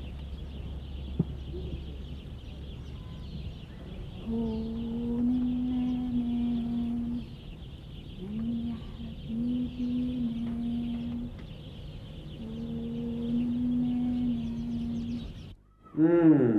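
A woman humming a slow tune in three long phrases of about three seconds each, the notes held steady at nearly one pitch, over a faint low hum.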